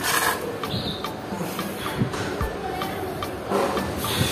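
A few light clicks and knocks of a Honda Dream motorcycle carburetor's small parts being handled as it is taken apart, over background music.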